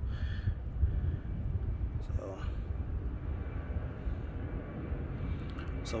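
Low, steady rumble of a jet airplane flying over.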